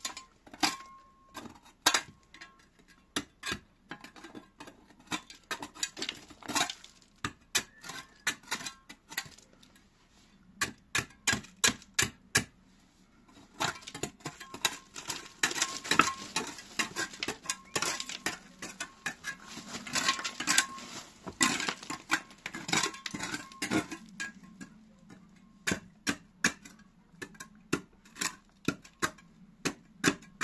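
A small steel trowel tapping and scraping against concrete blocks, chipping dried mortar off the foot of a plastered wall, with bits of rubble clinking. It comes as irregular sharp clicks with a light metallic ring, busiest in the second half.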